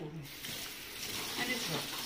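Kitchen tap turned on about a quarter second in, water then running steadily into a stainless steel sink.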